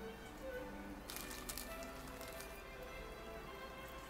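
Quiet background music of soft held notes, with brief handling noises about a second in as wet papier-mâché pulp is pressed into the form by hand.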